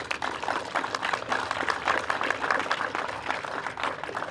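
Audience clapping, with many quick hand claps close together, thinning out near the end.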